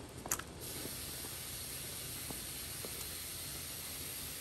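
Pot of pork trotters and ears at a hard boil: a steady hiss of bubbling water and steam, after about 22 minutes of simmering. A short clack near the start and a few faint taps come from chopsticks in the pot.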